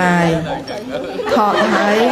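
Speech: a group of voices calling out the same word together, with drawn-out held syllables.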